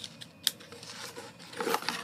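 Cardboard battery box being handled and opened, with light rustles and a sharp click about half a second in as the LiPo battery is drawn out.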